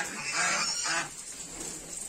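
Domestic geese honking: three short, loud honks in quick succession in the first second.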